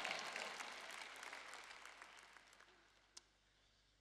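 Audience applause dying away over about three seconds, followed by a single faint click.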